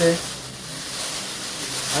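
Coleman foil emergency blanket crinkling and rustling as it is handled and held open.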